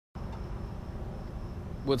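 Crickets chirping steadily, heard as one thin high tone over a low rumble.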